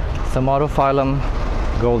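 A man's voice speaking in short bursts over a steady low rumble.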